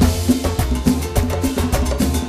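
Live cumbia band music in an instrumental break with no singing: drums and other percussion playing a quick, steady beat over bass.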